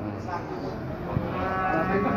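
Cattle mooing: one steady, held moo beginning about one and a half seconds in, over background voices.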